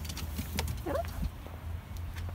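A small dog's claws and paws clicking irregularly on wooden playground steps, over a low rumble of wind on the microphone. A brief rising squeak comes about a second in.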